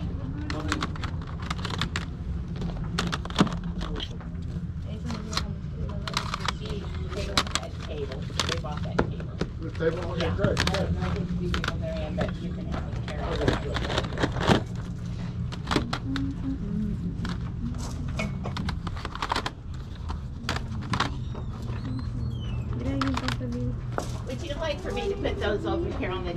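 Plastic CD jewel cases clacking against one another as they are flipped through one by one in a plastic basket, with many sharp clicks throughout.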